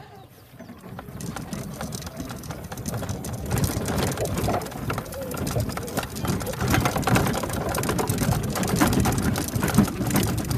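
Golf cart driving fast over bumpy grass, the body rattling and clattering with wind noise, growing louder over the first few seconds as it picks up speed. A sharp click right at the start.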